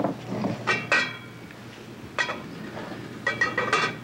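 Kitchenware being handled on a counter and stove: a few separate clinks and knocks of glass and metal, some ringing briefly, with a quick cluster of them near the end.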